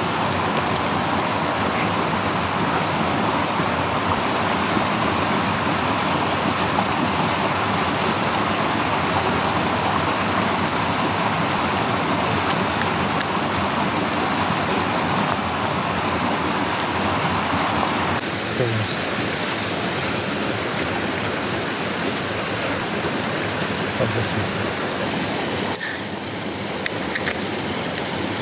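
Steady rushing of a mountain stream. Its tone changes about two-thirds of the way through, and a few faint knocks follow.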